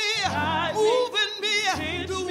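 A woman singing a gospel solo into a microphone, holding and bending notes with a wide, wavering vibrato.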